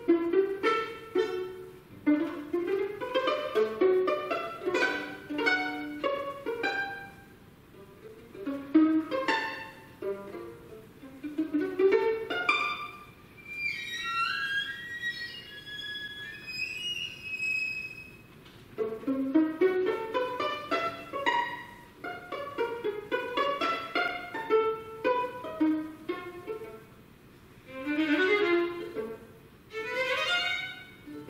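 Solo violin played unaccompanied: fast rising runs of short notes. About halfway through, a few seconds of sparser, higher notes, then the quick lower figures return.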